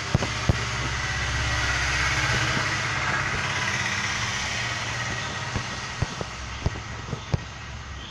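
A motor vehicle going by: a low engine rumble that swells over the first two or three seconds and then fades away, with a few sharp clicks near the end.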